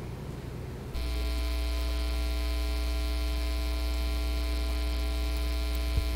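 Electrical mains hum on the meeting room's microphone and sound system, switching on suddenly about a second in and then holding steady as one low buzz with many evenly spaced overtones.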